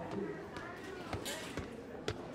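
Footsteps on a hard floor, a few evenly spaced steps about two a second in the second half, over faint background voices.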